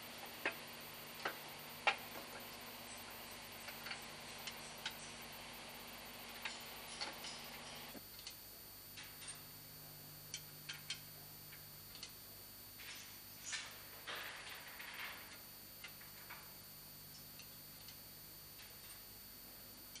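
Faint, irregular metallic clicks and taps of bolts and a steel guard plate being fitted by hand onto a marine diesel engine's camshaft chain housing.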